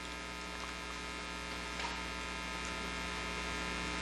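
Steady electrical mains hum: a low buzz with a tall stack of evenly spaced steady overtones.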